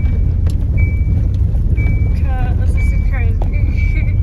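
Inside a small car driving over a rough, rutted grass-and-dirt farm track: a steady, heavy low rumble of road and engine noise, with a short high beep repeating about once a second.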